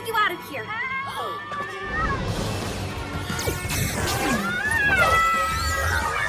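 Animated-show action music mixed with cartoon sound effects and wordless character cries. A low rumble sets in about two seconds in and continues beneath it.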